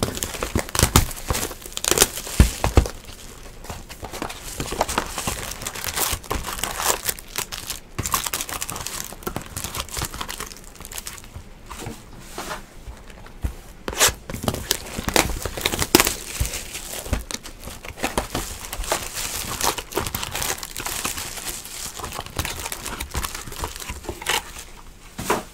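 Foil wrappers of trading-card packs crinkling and tearing as the packs are handled and ripped open by hand, a continuous run of crackles and rustles with frequent sharp snaps.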